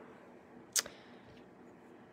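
Quiet room tone broken by a single short, sharp click about a second in.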